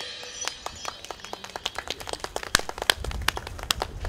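The last ring of a drum kit's cymbals fades out at the end of a song, then scattered hand clapping starts about half a second in. The claps are sparse at first and grow denser and louder toward the end.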